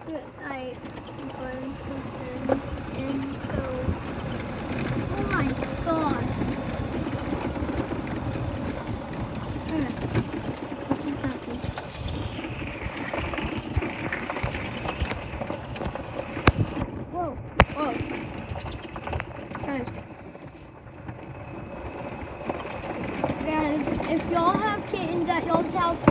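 Steady running noise of a golf cart on the move, with indistinct talking over it and a few sharp clicks about two-thirds of the way through.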